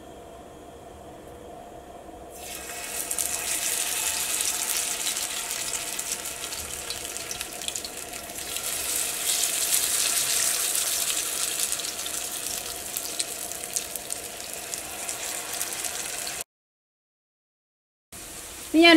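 Masala-coated potato slices sizzling and crackling in hot oil in a nonstick frying pan. The sizzle starts suddenly about two seconds in, after a faint steady hum, as the slices go into the oil, and it cuts off abruptly near the end.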